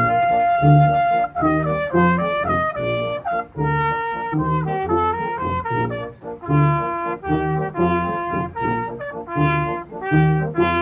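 Brass band playing: cornets carry a sustained melody that moves up and down over regularly repeated low bass notes.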